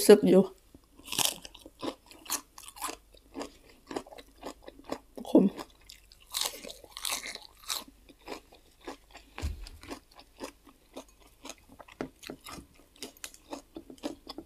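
Close-miked chewing of crisp raw endive leaf and grilled pork: irregular small crunches and wet mouth clicks, with louder crunching bites about a second in and again around six to seven seconds in.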